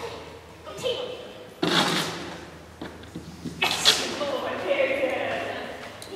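A woman's voice calling to a dog in indistinct, high-pitched tones, in an echoing hall, with two sharp noisy bursts, the first nearly two seconds in and the second more than halfway through.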